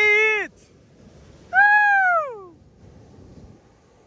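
A high voice-like call held briefly then dropping off, followed about a second and a half in by one longer call that arches and falls in pitch, ending a run of short calls.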